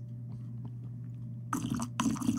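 Noisy slurping sips from a mug, two short bursts about one and a half seconds in, over a steady low electrical hum.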